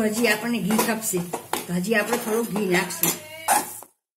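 A metal spoon scraping and knocking against a metal pan while stirring coarse flour roasting in ghee. It makes a busy run of clicks and scrapes that cuts off abruptly just before the end.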